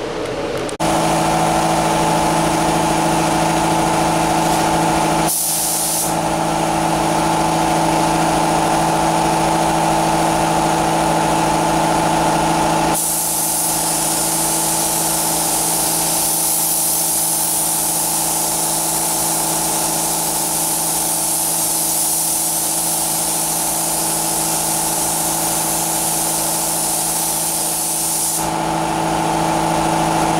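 Gravity-feed automotive paint spray gun hissing as it lays a control coat of candy base colour on a car's hood, over a steady machine hum. The hiss breaks briefly about five seconds in and is brighter from about halfway to near the end.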